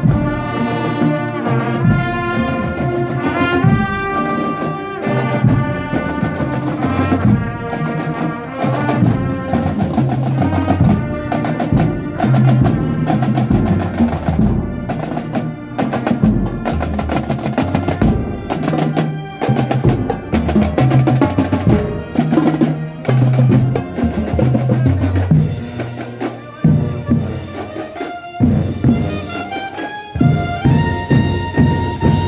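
Marching band playing in the street. Trumpets and saxophones carry a melody at first. From about a quarter of the way in, marching drums beat sharply and steadily over low bass notes as the drum section passes.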